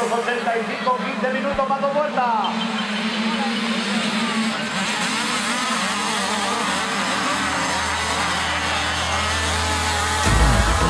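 A pack of motocross bikes revving together and accelerating away from the start, many engines at once, with a sharp rise in revs about two seconds in.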